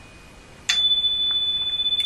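A sudden click, then a single steady high-pitched electronic tone that comes in about two-thirds of a second in and holds at an even level without fading.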